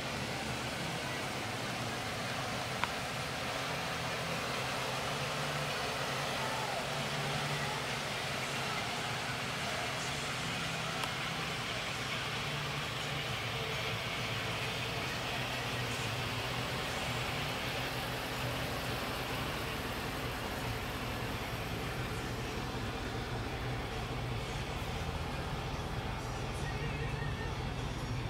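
A motor vehicle engine running steadily at idle, a low even hum under faint outdoor background noise.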